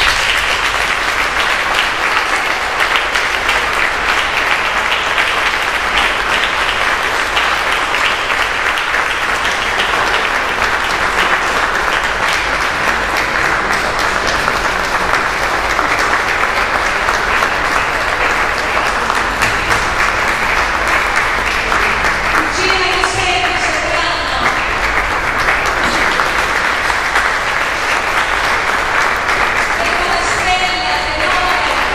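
An audience applauding steadily and loudly in a hall. A voice is heard briefly about three-quarters of the way through.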